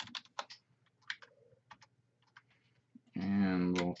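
Computer keyboard keystrokes: a few scattered, uneven key presses over about two seconds, then a man starts talking near the end.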